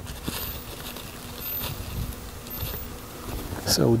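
A flying insect buzzing steadily with a low drone, under faint rustling.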